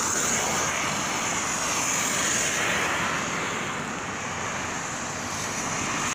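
Steady rushing hiss of rain and car tyres on a wet road.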